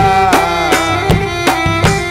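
Live gana band music for a slow Tamil sad song: an electronic keyboard melody over a steady hand-drum beat of about three strokes a second, with no singing.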